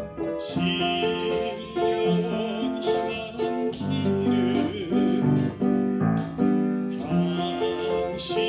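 Upright piano played by ear, a melody over sustained chords, notes changing about every half second.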